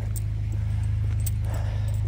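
A steady low, evenly pulsing engine-like hum, with a few light jingles of a bunch of keys being carried.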